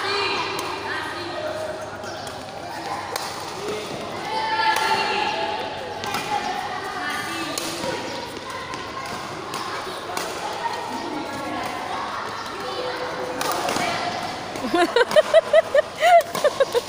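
Badminton rally: sharp racket strokes on the shuttlecock every second or few, over a steady background of voices in the hall. Near the end, louder pulsing voices break in.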